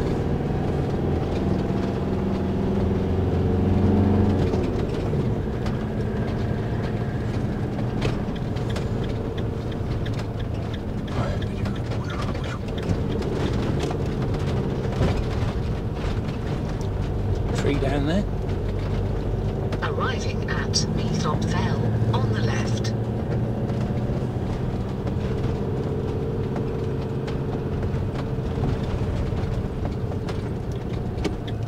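Engine and road noise heard from inside a vehicle's cab as it drives slowly along a narrow lane, steady throughout with a few brief knocks and rattles.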